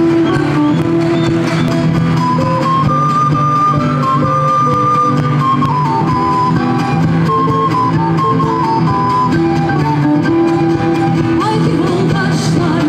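Live folk band playing an instrumental passage: a stepping melody line over steady strummed and plucked accompaniment from guitars and a long-necked lute, with a frame drum.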